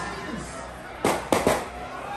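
Three sharp bangs in quick succession about a second in, like firecrackers, over a low background of the live show.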